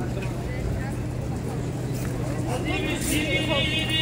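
Busy street ambience: indistinct voices of people nearby over a steady low hum. A brief high, wavering sound comes in near the end.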